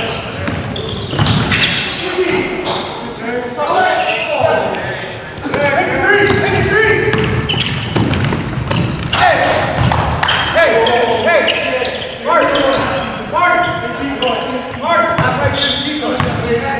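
A basketball bouncing on a hardwood gym floor, with players' voices calling out indistinctly, in a large echoing gym.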